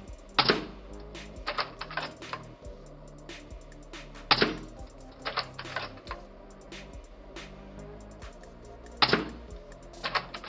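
C-TAC CT700LE spring-powered airsoft sniper rifle fired three times, about four and a half seconds apart. Each sharp shot is followed about a second later by a quick run of smaller clicks as the bolt is cycled to recock the spring. Background music plays underneath.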